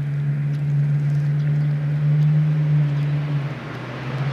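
Steady low hum of an engine, the loudest sound, which fades away about three and a half seconds in. Faint, brief high chirps from sparrows sound over it.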